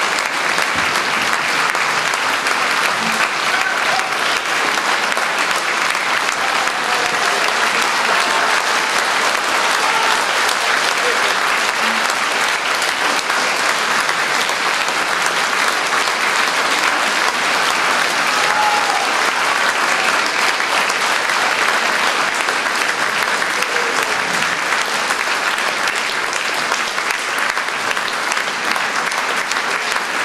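Concert hall audience applauding steadily, a dense, unbroken clapping.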